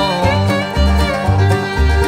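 Bluegrass band playing an instrumental passage, with a bass note about twice a second.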